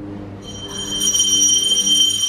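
A temple bell ringing: a high, steady metallic ringing that begins about half a second in and grows louder, over a low hum.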